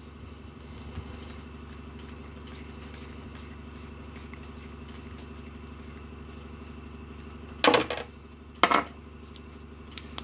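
Steady low background hum, with a faint click about a second in and two short, loud handling noises about a second apart near the end.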